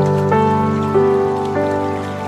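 Calm background music of long held notes, changing chord about three times, laid over a steady patter of water.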